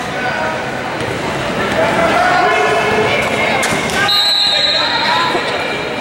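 Indistinct voices of players and spectators in a gym, with a basketball bouncing on the court. A high, steady tone sounds for about two seconds starting about four seconds in.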